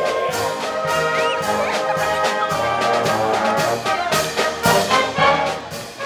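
A concert band of brass and woodwinds playing a piece together, with sharp percussive accents recurring throughout.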